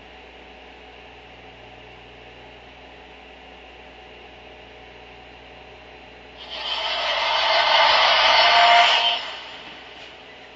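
Audio of a streamed video starting to play through a smartphone's small speaker: steady hum and hiss, then about six seconds in a loud burst of static-like noise that swells for about three seconds and cuts off.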